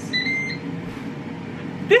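A dual-drawer air fryer's control panel gives a short electronic beep, two pitches in quick succession in the first half-second, as it is started for a 15-minute cook. A steady faint whir follows, the fryer starting to run.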